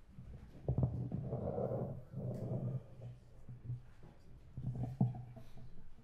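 Microphone handling noise as a stage microphone is adjusted on its stand: low rumbling and rubbing, with a sharp thump about a second in and another near the end.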